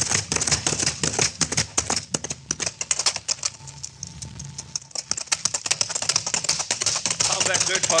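Radio-drama sound effect of horses galloping: a fast, continuous clatter of hoofbeats that thins out and quietens around the middle, then picks up again.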